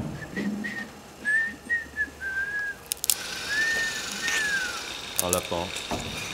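A person whistling softly: a few short high notes, then wavering held notes, ending in two arching glides that rise and fall. A sharp click comes about three seconds in, and a brief voiced sound near the end.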